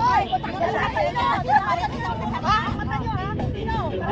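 Several people talking over one another, with a steady low rumble underneath.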